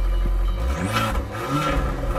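Abarth 695 Tributo 131 Rally's 1.4-litre turbocharged four-cylinder running through its Record Monza exhaust, heard close at the twin tailpipes with the exhaust in normal (non-Scorpion) mode. A steady low idle, with the engine note rising and falling twice.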